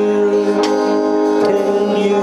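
Live music led by an electric keyboard holding sustained chords, moving to a new chord about one and a half seconds in.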